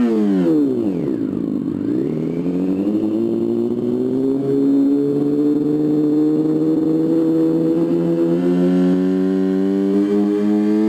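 Revolt RV400's artificial motorcycle sound, the 'Revolt' preset: a synthetic engine note that drops in pitch over the first second or so, then climbs slowly and steadily as if revving up.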